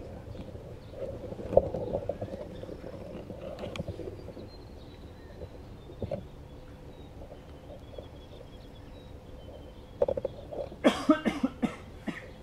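Outdoor rural ambience with a faint, wavering high trill in the distance. About a second before the end comes a quick run of five or six loud, harsh sounds.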